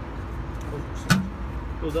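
Steady low rumble of the Hazan PB 115 ride-on sweeper's diesel engine running, with one sharp knock about a second in.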